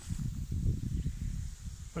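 Light wind buffeting the microphone: an uneven, gusty low rumble.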